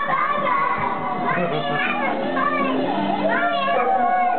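A young child singing and vocalising into a toy karaoke microphone, over music, drawing out a long held note near the end.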